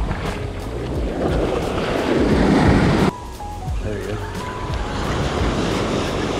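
Waves washing in shallow surf, with wind on the microphone, building to a loud rush that cuts off abruptly about three seconds in; background music runs underneath.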